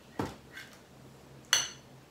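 Knife and fork knocking and clinking against a ceramic plate while cutting a slice of pizza: a knock just after the start, a faint tap, then a sharper clink with a short ring about a second and a half in.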